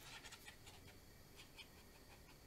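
Near silence, with a few faint scratches of a dry brush dabbing texture onto watercolour paper.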